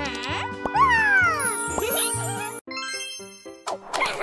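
Cartoon soundtrack: background music with sliding, falling sound effects and a sparkly high sweep that runs downward a little past two seconds in.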